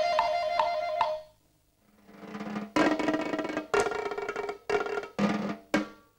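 A few repeated piano notes that stop about a second in. After a short pause, drums come in with a roll that builds into a series of loud, sharp drum hits.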